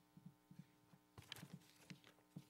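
Near silence: the quiet room tone of a meeting room's microphones, with a faint steady hum and several faint, soft low thumps scattered through it.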